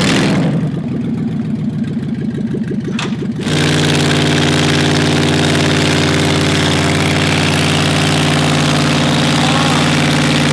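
Dodge Dakota pickup's engine running at low speed with a pulsing exhaust, then, about three and a half seconds in, a louder steady engine sound holding one pitch.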